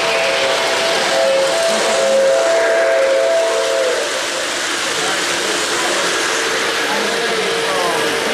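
O-gauge model train whistle blowing a steady chord of several tones, which stops about four seconds in. A single lower whistle tone follows, over steady crowd chatter.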